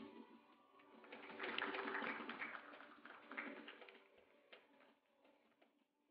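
Scattered applause from a small audience, swelling about a second in and fading out by about four and a half seconds.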